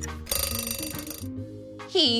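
Background music with an alarm-clock-style bell ringing for about a second, the time-up signal of a quiz countdown timer.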